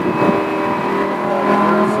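Supercar engine running at a steady part throttle, heard from inside the cabin over tyre and road noise. A low engine tone comes in about halfway through.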